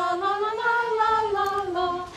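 Carolers singing unaccompanied, a slow melody of held notes that rises and then falls.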